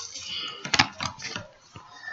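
Pokémon trading cards being handled, with a few light clicks and rustles.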